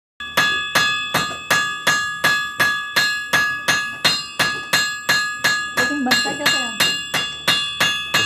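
A blacksmith's hand hammer striking metal on an anvil in a steady rhythm of about three blows a second, every blow ringing with the anvil's clear, bell-like tone.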